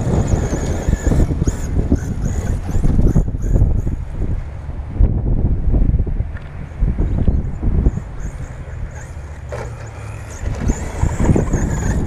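Gusty wind buffeting and rumble on the microphone as it moves fast over the dirt track. A thin high whine from a radio-controlled 4x4 truck's motor comes and goes several times.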